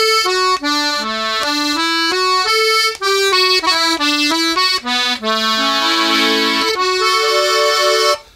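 Eric Martin two-row, eight-bass melodeon in A/D playing a phrase of tune on its two-voice setting, the right-hand reeds tuned with a fairly wet ("fruitier") tremolo. A run of quick melody notes, with a held chord a little past the middle.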